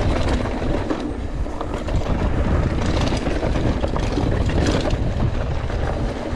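Mountain bike riding down a dirt forest trail, heard from a camera mounted on the rider or bike: a steady low rumble of tyres and wind on the microphone, with constant rattling clicks as the bike runs over bumps.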